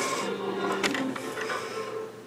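Hoover WindTunnel upright vacuum cleaner being handled at its controls: a low steady mechanical whir with a couple of sharp clicks about a second in, fading near the end.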